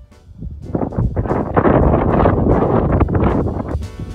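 Wind buffeting the microphone, a loud rough rushing that builds about a second in and eases near the end.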